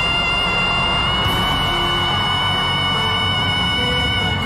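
Live concert music: one long high note held steady over the band's backing, with low bass and drums beneath. About a second in, a brighter wash of noise joins it, fitting arena crowd cheering.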